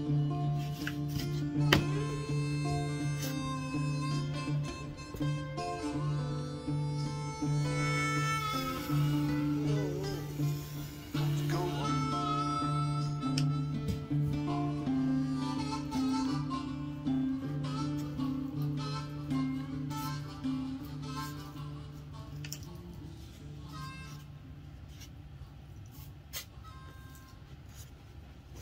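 Background music, a harmonica playing held notes over guitar, fading out near the end. A few faint clicks sound under it.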